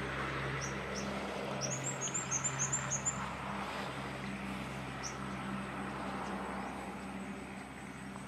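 A bird gives a quick run of about eight short high chirps between about one and a half and three seconds in, with a few single chirps around it. Under it runs a steady low drone and a constant background hiss.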